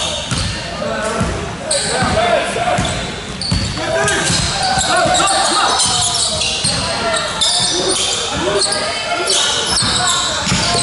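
Basketball game play on a hardwood court in a large, echoing gym: the ball bouncing and players running, with voices calling out.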